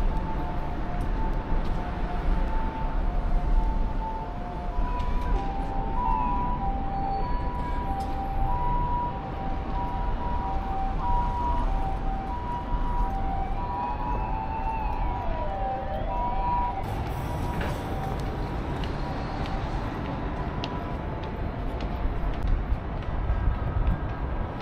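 An emergency vehicle's two-tone siren sounds, alternating evenly between a high and a low note. The pair of notes steps up in pitch about five seconds in, and the siren stops a little past halfway. Steady road-traffic rumble continues underneath.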